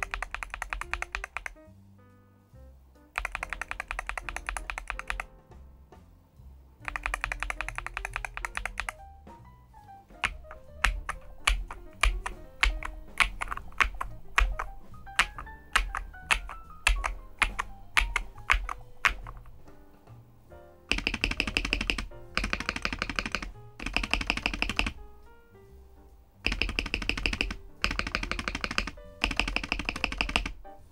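Bursts of fast typing on a Varmilo Minilo75 HE, a keyboard with magnetic (Hall-effect) linear switches in an aluminium-plate, tray-mount build. Each run of clicking keystrokes lasts about two seconds. A stretch in the middle has slower separate keystrokes, about two a second.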